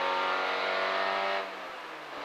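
Peugeot 205 F2000 rally car's engine heard from inside the cockpit, pulling hard with its pitch slowly rising, then about one and a half seconds in it drops in loudness and falls in pitch.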